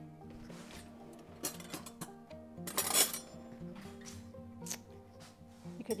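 A few light clinks of cutlery and one louder, short clatter about three seconds in, as a table knife is fetched, over soft background music.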